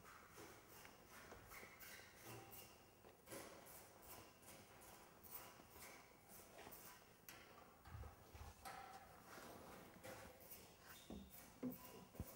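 Near silence: faint workshop room tone with light clicks, rustles and a few soft knocks as a car door trim panel is handled and offered up to the door.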